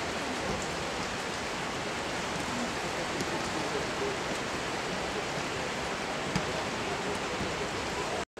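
Steady rain hiss, with faint scattered drop ticks and faint distant voices, and one short thud about six seconds in.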